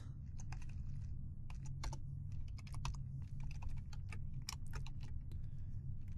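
Typing on a computer keyboard: a run of irregularly spaced key clicks over a steady low hum.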